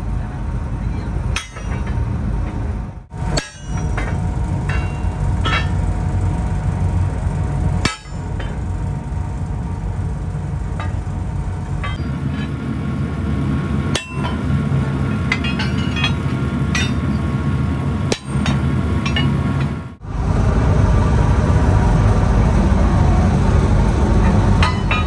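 Scattered sledgehammer and hammer blows on steel bars, with sharp metal clinks, over a steady low hum. The sound breaks off abruptly several times.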